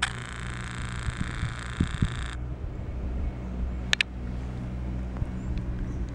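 Open chairlift running with a steady low mechanical hum, with a high steady hiss over it for the first two seconds that cuts off suddenly, and two sharp clicks about four seconds in.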